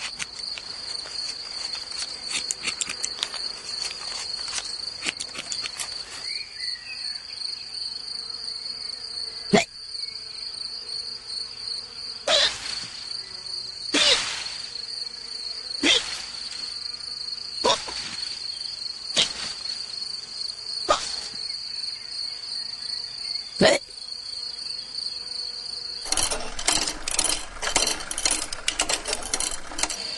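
Steady high chirring of insects in the brambles, with a string of about eight short hiccups at uneven gaps of one and a half to three seconds through the middle. Near the end a denser, rapid rattling chirr takes over.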